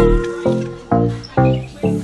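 Background music: pitched notes struck about twice a second over a bass line, with the drums dropping out briefly.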